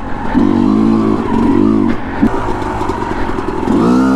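Yamaha YZ250 two-stroke dirt bike engine revving up and down several times as the throttle is worked, with a sharp knock just after two seconds in.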